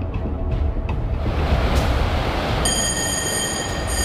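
A heavy low rumble with a rushing noise that builds about a second in. Near the middle, a steady high-pitched whine joins it, with music underneath.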